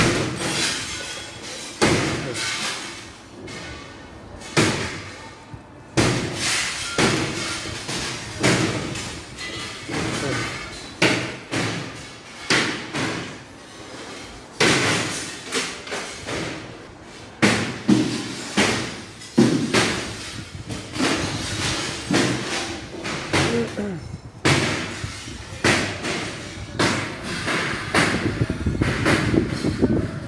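Repeated heavy bangs and thuds at irregular intervals, about one or two a second, each sharp at the start and dying away with an echo, like demolition hammering on a building.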